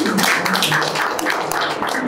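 A small group of people clapping their hands together, a quick, dense run of claps, with a few voices faintly under it.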